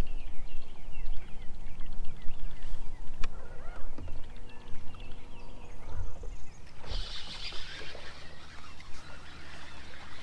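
Open-air sound aboard a bass boat on a river: a low, uneven rumble with birds chirping through the first half and a few dull knocks. From about seven seconds in, a hissing rush joins in.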